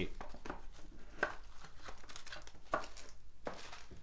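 Plastic wrapper of a trading-card pack crinkling and tearing as it is opened by hand: scattered faint crackles with a few sharper ticks.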